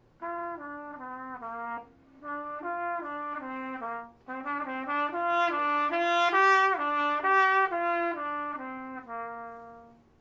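A brass instrument, most like a trumpet in range, playing a slow melody of held notes in three phrases with short breaths about two and four seconds in. It swells louder towards the middle and falls back to end on a long low note, played sitting up tall for a well-supported tone.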